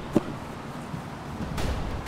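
Low wind rumble on the microphone outdoors. Just after the start comes one brief sharp sound as a leapfrogger lands on the grass, and a fainter one follows about a second and a half in.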